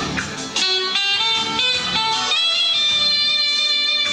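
Live band music: a clarinet plays the melody over guitar accompaniment, holding one long high note through the second half.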